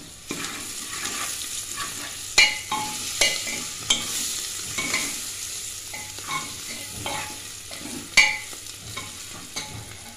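Onions, green chillies and tomato sizzling in hot oil in an aluminium pressure cooker as they are fried for the tempering, stirred with a steel ladle that scrapes and knocks against the pot every second or so. Two knocks stand out as the loudest, one early and one late.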